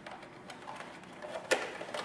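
Faint rustling and small clicks of a plastic costume mask and cape being handled as the mask is pulled off, with one sharper click about one and a half seconds in.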